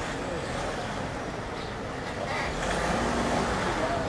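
Street traffic: motor vehicle engines running under a steady rush of road noise, with a brief brighter hiss a little past halfway.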